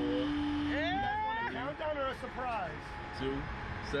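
Indistinct human voices, a rider talking or vocalising without clear words, over a low steady background rumble. A steady hum cuts off about a second in.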